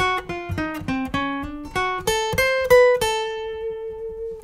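Acoustic guitar playing a single-note melodic phrase: about a dozen picked notes step down and then climb back up, and the last note is held and left to ring near the end.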